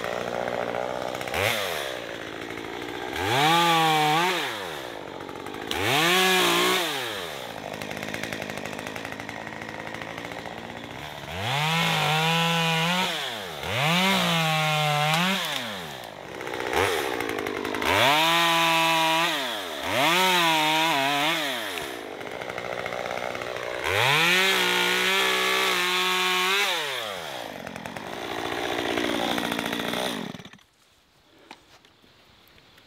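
Stihl MS 194 T top-handle chainsaw, a small two-stroke, cutting pine branches. Again and again it is throttled up to a high steady whine and let fall back to idle, about seven times, with the saw idling in between.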